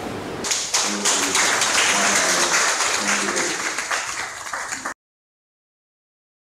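Audience applauding, starting about half a second in and cut off suddenly near the end.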